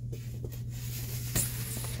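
Foam board sheets being handled at a store display: a sharp tap about a second and a half in, then a short scraping rustle as the sheets slide against each other, over a steady low hum.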